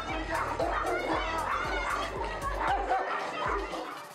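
Tibetan Mastiff barking, mixed with people's voices and background music.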